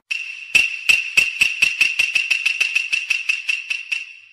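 Title sound effect: a run of sharp percussive clacks that speeds up, about seventeen strikes, over a held high ringing tone, dying away at the end.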